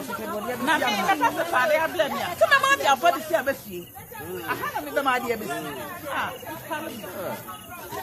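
People talking, voices overlapping in chatter, with a brief lull about halfway through.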